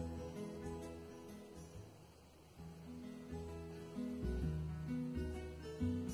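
Background music: a plucked acoustic guitar playing notes, softening about two seconds in and then picking up again.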